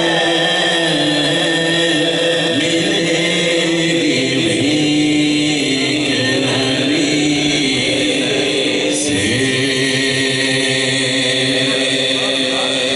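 A man's voice singing a naat into a microphone, in a chanting style with long held notes that shift pitch every few seconds.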